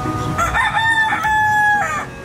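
A rooster crowing once: a single long call that starts about half a second in, holds steady, and falls away just before the end.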